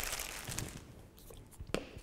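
Paper offcuts rustling and crinkling on a tabletop as they are moved aside, fading out within the first second. A light tap follows near the end as a glue stick is picked up.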